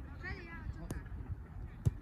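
Youth football match heard from the touchline: faint distant shouts from players, a light knock about a second in, and a sharp thump near the end, the loudest sound, as the ball is played.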